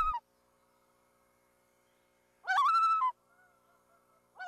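A single high, wavering bird call lasting under a second, about two and a half seconds in, with near silence around it.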